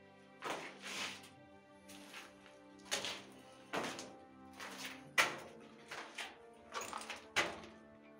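Background music of held, sustained chords, cut by about nine sharp, unevenly spaced thuds.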